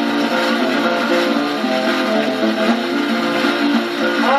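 A 1928 shellac 78 rpm record playing on a turntable: an instrumental break of picked acoustic guitar, with the melody on the low strings and brushed chords between the notes. Steady record surface hiss runs under it.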